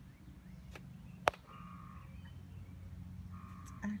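A sharp click about a second in, with a fainter one just before it, over a steady low hum.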